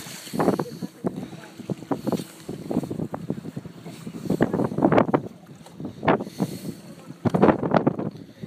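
Indistinct voices coming and going in short bursts, with wind buffeting the phone's microphone.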